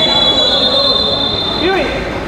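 A long, steady, high-pitched whistle blast lasting about two seconds and stopping near the end, most likely the referee's whistle. Players' shouting voices are heard under it.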